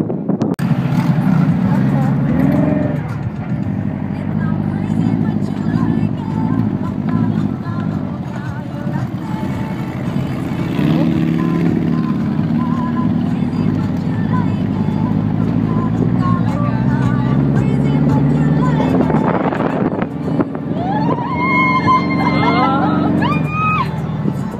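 Dune buggy engine running as the buggy drives over sand, its pitch shifting with the throttle. Near the end a few rising high-pitched cries sound over it.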